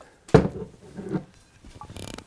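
Hands twisting at the sealed screw cap of a new liquor bottle: a sharp click about a third of a second in, then quieter creaking and scraping as the grip strains against a seal that has not yet broken.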